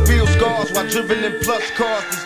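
Hip-hop track with a rapping voice over a beat, a deep bass note dropping out about half a second in.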